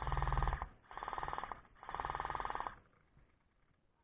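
Gel blaster firing three short full-auto bursts, each under a second long, a rapid buzzing rattle of shots from the motor-driven gearbox.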